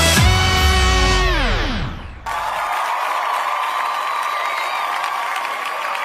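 Television opening-theme music whose notes slide down in pitch and fade out. About two seconds in it cuts abruptly to a studio audience cheering and applauding steadily.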